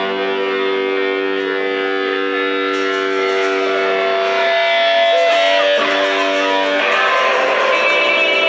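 Live rock band: a distorted electric guitar holds a sustained chord through its amplifier. About three seconds in, drum cymbals join with a steady beat.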